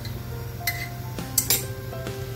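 Background music with held notes, over which kitchen utensils clink sharply three times in the second half, the last two close together.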